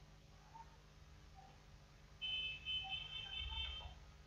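Skype's sign-in alert on a computer: a high electronic tone of several steady notes sounding together, starting about two seconds in and lasting about a second and a half.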